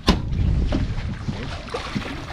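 Wind rumbling and buffeting on the microphone out on a boat, with a sharp knock just after the start and a few lighter knocks of handling.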